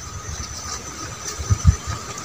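Wind buffeting the microphone outdoors, a low uneven rumble with stronger gusts about one and a half seconds in, over a faint steady high drone of field insects.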